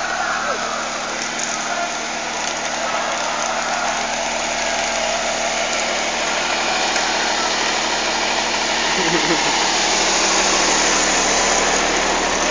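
Engine of a trailer-mounted mobile light tower running steadily: a constant hum under an even rushing noise.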